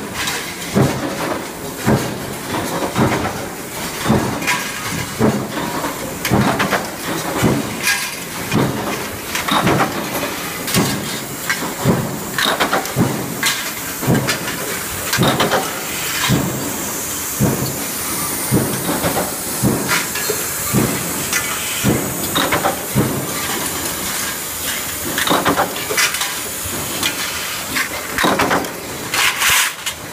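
Mechanical flywheel punch presses stamping sheet-steel parts, a sharp metallic strike roughly every second over a steady din of running machinery.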